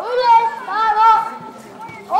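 A child actor declaiming kabuki lines in a high voice, syllables drawn out with the pitch held and bending; the voice drops away a little past the middle.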